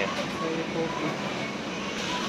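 Steady, even hiss of supermarket background noise from ventilation and the refrigerated display cases, with faint voices in the background.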